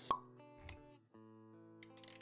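Sound effects of an animated intro over light background music with held notes: a sharp pop just after the start, the loudest sound here, then a short low thud a little later. The music drops out for a moment about halfway through and then comes back.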